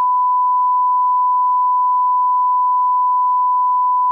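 Steady 1 kHz sine test tone, a single pure beep held at a constant level: the line-up tone that goes with a television test card.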